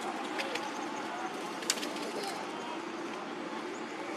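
Outdoor ambience: a steady background hum with bird calls, and a few sharp clicks, the loudest about two seconds in.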